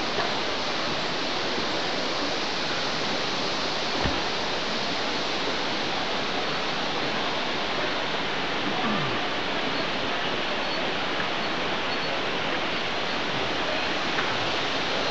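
A steady, even rushing noise with no rhythm or pitch, like falling water or moving air, with a single low thump about four seconds in.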